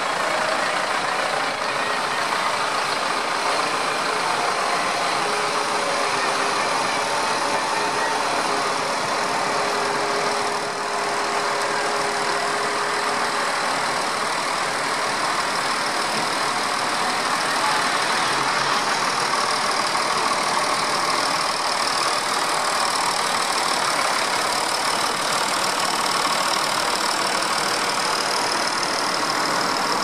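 Diesel engines of a line of farm tractors, modern John Deeres and older models, driving slowly past one after another; a steady, continuous engine sound with no clear gaps between machines.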